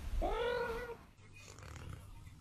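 A domestic cat meows once, a short call of under a second that starts just after the beginning.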